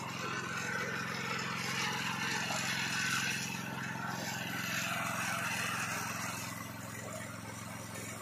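An engine idling steadily, a low even hum that does not change.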